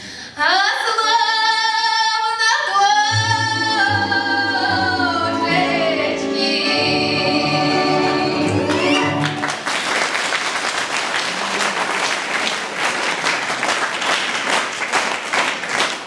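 A woman sings the final phrase of a Russian folk song in full voice over a folk instrument ensemble of gusli, bayan and domras, ending on long held notes. About nine and a half seconds in, the music stops and audience applause takes over.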